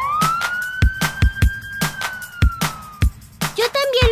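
Cartoon fire truck siren giving one wail: it climbs quickly, holds, then slowly falls and fades out about three seconds in, over the steady beat of background music.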